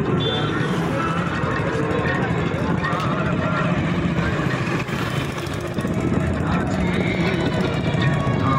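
A motorcycle engine running as the bike rides slowly, mixed with indistinct voices and street noise.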